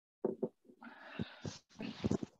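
A man clearing his throat after drinking: a couple of short rough throat sounds, a breathy exhale, then more short throat noises near the end.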